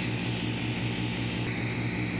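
Steady hiss with a low hum beneath it: background room noise with no speech.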